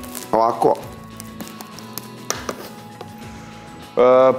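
Faint background music with a few light taps and clicks of a metal spoon on a wooden cutting board as raw minced-meat patties are pressed into shape.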